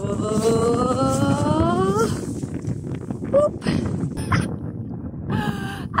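A woman's voice drawing out one long "boooop" that rises slowly in pitch for about two seconds, followed by wind rumbling on the microphone and a few short vocal sounds near the end.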